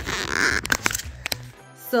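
Phone camera being handled and taken off its stand: a rustle, then several sharp clicks and knocks about a second in, over background music.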